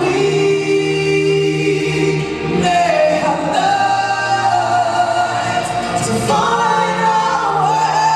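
Four-voice vocal group, one man and three women, singing long held chords in close harmony into microphones, moving to new chords about two and a half seconds in and again around six seconds.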